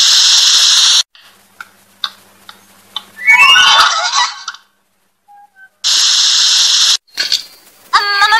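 About a second of loud TV static hiss used as a glitch transition, then a short, high sliding squeal from a cartoon character. A second burst of the same static follows about six seconds in.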